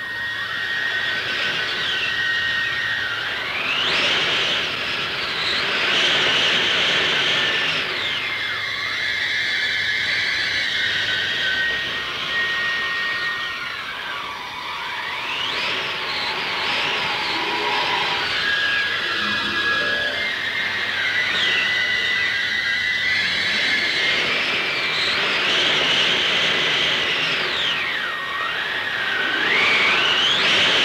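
Blizzard wind: a steady rush with whistling gusts that sweep up and down in pitch every few seconds, over some held high notes.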